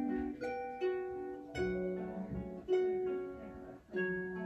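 Lever harp being plucked: chords and melody notes struck roughly once a second and left to ring.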